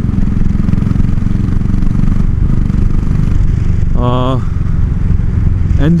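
Royal Enfield Classic 500's single-cylinder engine running steadily under way, a fast, even thump from the exhaust. Freshly serviced, the engine now runs smoothly.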